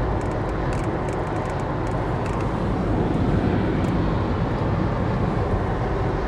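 Steady road noise inside a moving car's cabin at highway speed: the hum of tyres and engine, even throughout.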